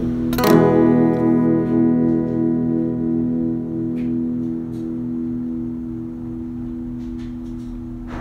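Background music: a guitar chord is strummed about half a second in and left to ring, fading slowly.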